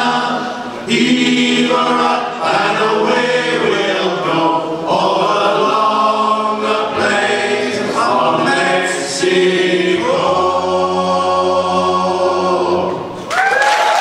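Male a cappella choir singing the last lines of a sea shanty in close harmony, ending on a long held chord. Applause and cheering break out from the audience just before the end.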